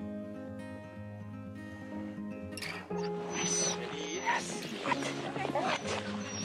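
Background music for the first half. About halfway in, sled dogs start yipping and whining excitedly over the music, and the noise grows busier toward the end.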